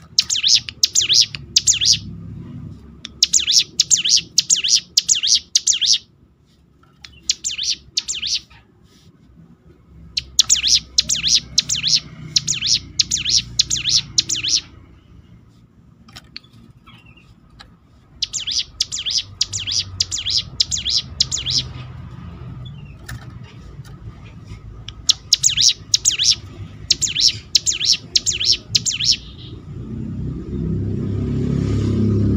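Hill prinia (ciblek gunung) singing: rapid strings of sharp, high repeated notes in six bursts of one to four seconds, with short pauses between.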